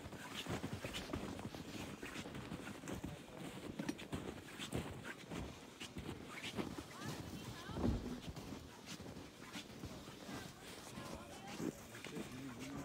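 Indistinct chatter of people talking, with irregular crunching footsteps in snow.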